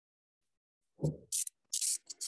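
A low thump about a second in, then two short bursts of scratchy rubbing noise close to the microphone.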